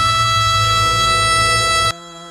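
A male pop singer holding one long, steady high note over a low band accompaniment, with no vibrato; the note and music break off sharply near the end.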